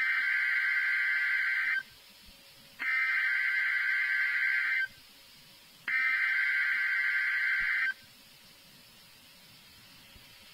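NOAA Weather Radio Emergency Alert System SAME header: three identical bursts of buzzy digital data tones, each about two seconds long with about a second between them. The bursts are the coded header that opens a severe thunderstorm watch alert.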